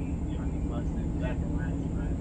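A faint voice coming through a drive-through intercom speaker, heard from inside a car over the steady low hum of the idling car.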